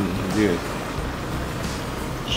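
Steady low rumble of outdoor background noise, with a brief fragment of a voice about half a second in.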